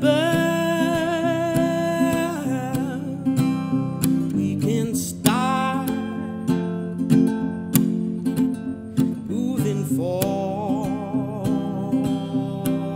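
Strummed acoustic guitar with a man's voice singing long held notes over it, the first at the start, another around five seconds in, and a wavering one from about ten seconds in.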